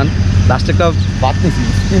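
A man's voice talking over a steady low hum.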